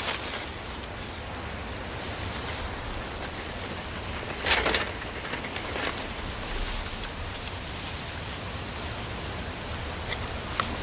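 Bicycle being ridden along a road, tyres rolling over a steady outdoor hiss, with a brief louder rush of noise about halfway through.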